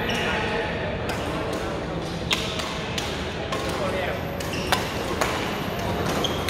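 Badminton rackets hitting shuttlecocks: a series of sharp, separate hits from the rallies on several courts, the loudest a little over two seconds in, over steady chatter from the many players in the hall.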